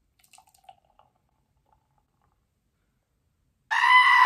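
Milk poured from a plastic bottle into a wine glass, a faint short gurgle in the first second. Near the end a loud goat bleat cuts in.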